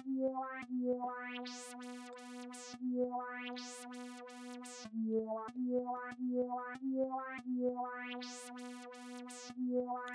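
Synth melody played from a one-shot sample: a held note with short notes over it, its tone sweeping brighter as a filter opens, in a phrase that repeats.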